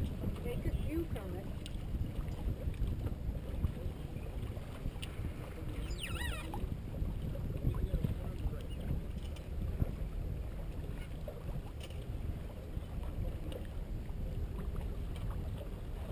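Steady rush of wind over the microphone and water along the hull of a C&C 34/36 sailboat under sail.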